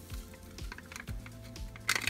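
Soft background music with a steady beat, and near the end a foil powder packet crinkling as powder is shaken out of it.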